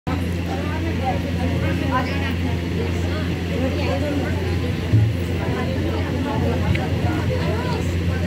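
Several women's voices chattering over one another, over a steady low electrical hum, with a brief thump about five seconds in.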